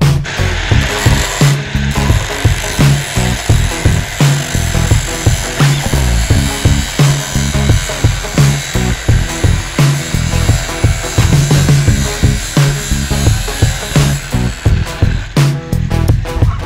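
Abrasive cut-off disc grinding through steel: a steady, harsh grinding noise that stops near the end. Background music with a steady beat plays underneath.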